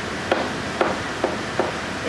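Four short, sharp taps, roughly half a second apart, over a steady background hiss.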